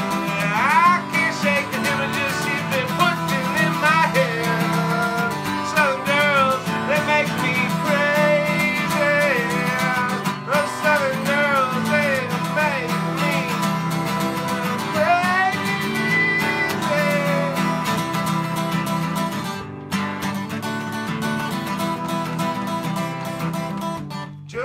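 Strummed acoustic guitar playing a country song's instrumental passage, with a wordless gliding, wavering melody line over it that stops about 18 seconds in, leaving the guitar alone and a little quieter.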